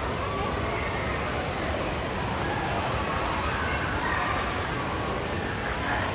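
Steady rushing background noise with faint, distant voices of people talking.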